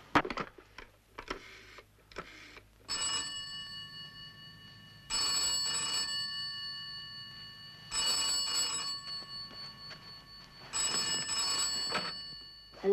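Bell of a red rotary-dial telephone ringing four times, each ring about a second long and roughly three seconds apart, signalling an incoming call. The last ring stops as the handset is lifted. A few sharp clicks come in the first couple of seconds.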